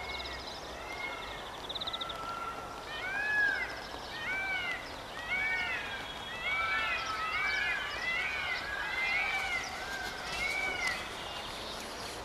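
A chorus of animal calls: many short calls that each rise and fall in pitch, overlapping one another and coming thickest in the middle, over a steady background hiss.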